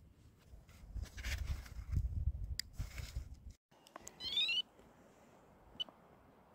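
Handling noise and rustling with scattered clicks as the wire of a dipole antenna is shortened with cutters, followed about four seconds in by a short rising squeak and, near the end, a brief high beep.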